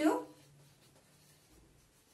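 Faint scratching of a felt-tip marker writing on a whiteboard.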